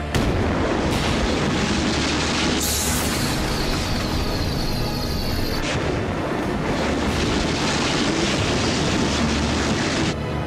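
Dense rumbling, booming sound effects from an animated TV soundtrack, mixed with score music. The roar starts suddenly, and a bright hissing sweep comes in about three seconds in.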